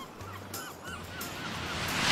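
Soft cartoon soundtrack: low bass notes under a quick run of about six short, high chirping sound effects, the level swelling gently near the end.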